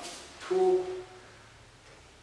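A man's voice: a brief hiss, then a short, steady-pitched hum-like vocal sound about half a second in, then quiet room.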